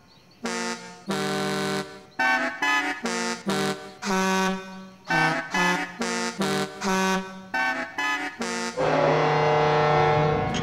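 Cartoon train horns honking a quick tune: about twenty short toots at changing pitches, some held a little longer. Near the end a long, loud, steady sound sets in and carries on.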